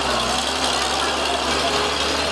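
Road traffic dominated by heavy truck engines running at low speed, a steady low engine hum under dense traffic noise, with faint voices in the background.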